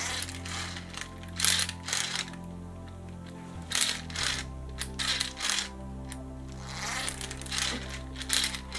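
Background music with sustained chords that change about halfway through, over a few irregular sharp plastic clicks and rattles from a Sky Dancers launcher being worked by hand.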